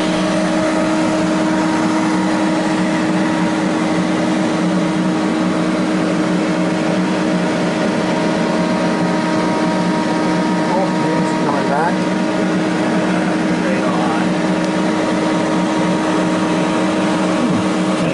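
Steady machinery hum from a submersible, a constant noise with several unchanging low and mid tones that neither starts, stops nor changes pitch.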